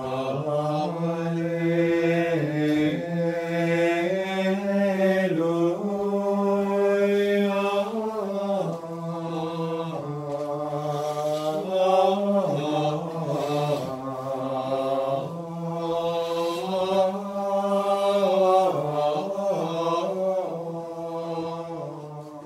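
Unaccompanied Gregorian chant in Latin sung by men's voices: a single melodic line that moves in small steps between long held notes, starting at once and dying away at the end.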